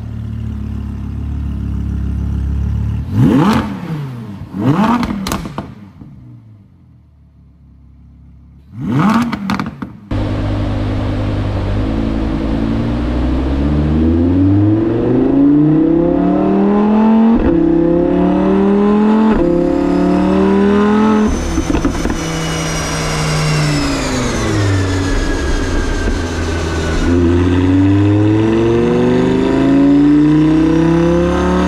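Audi R8 V10 Plus's 5.2-litre V10 on its factory Audi sports exhaust, first free-revved in three sharp blips with a lull between them. Then, from about ten seconds in, it runs loaded on a rolling-road dyno: revs climb and drop back at each gearchange about every two seconds, fall away steadily as it comes off power, and climb again near the end.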